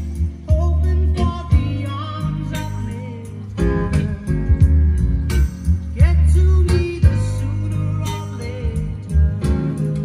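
A song with singing and guitar over a strong, steady bass line, played through vintage Sansui S990 three-way speakers driven by a Sansui 210 receiver.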